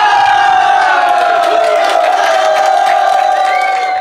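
A group of men shouting one long cheer together, held steady and sinking slightly in pitch.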